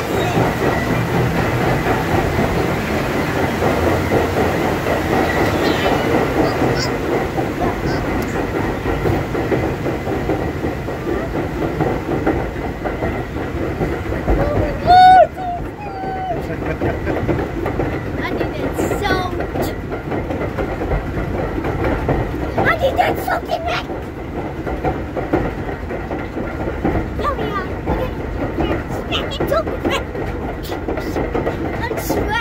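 Grizzly River Run raft ride's lift conveyor clattering steadily as the raft is carried up the lift hill, with a brief loud squeal about halfway through.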